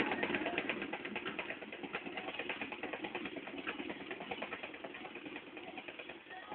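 A boxing punching ball being struck in a fast, steady run of rapid hits, many a second.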